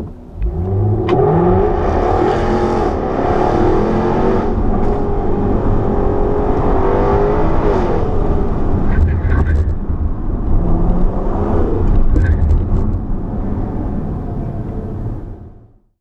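Car engines revving and pulling hard, rising in pitch at the start and fading out near the end.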